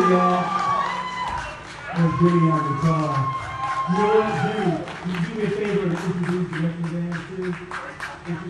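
Live blues-rock band playing on stage, a wordless lead line bending and sliding over the band, with cymbal strokes coming through more clearly in the second half.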